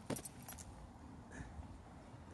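A few light, sharp clicks and a short rattle close to the microphone: a cluster in the first half-second and one more about 1.4 seconds in, over faint steady outdoor background noise.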